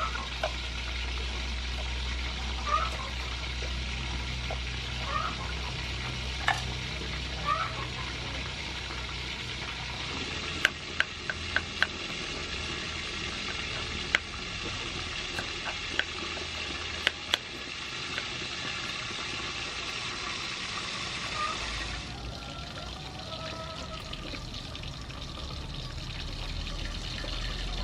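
A kitchen knife cutting fresh ginger on a round wooden chopping board: about nine sharp clicks of the blade striking the board, scattered over several seconds around the middle. A steady background hiss runs underneath.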